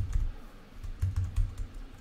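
Computer keyboard being typed on: a quick, uneven run of light key clicks as a word is entered.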